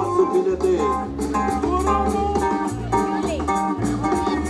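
Music with a steady beat, a moving bass line and sustained melody notes.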